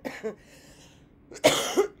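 A woman coughing to clear her throat: a short cough at the start, then a louder cough about one and a half seconds in.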